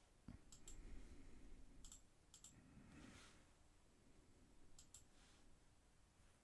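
Near silence broken by faint computer mouse clicks, each a quick pair of clicks, about four times.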